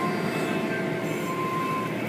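Tunnel car wash running, heard from inside a car passing through it: a steady rumble of machinery and water with a faint high whine in the second half.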